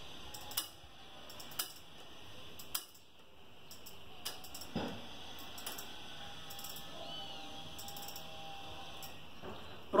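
Faint, irregular clicks from a GTK Chronic suspension fork's travel-adjust knob being turned while the fork settles from 150 mm to 100 mm of travel. The clicks come about five or six times, mostly in the first half, over a quiet room background.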